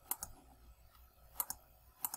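Computer mouse clicking: one click just after the start and a quick pair of clicks about a second and a half in.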